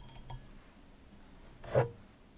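Faint handling of an open glass sake bottle whose cap has just been twisted off, then one short, louder knock near the end.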